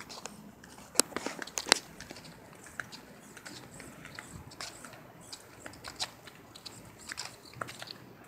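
Footsteps on a paved path and stone bank: irregular light clicks and crunches, the loudest cluster about a second in, with no model-plane motor running.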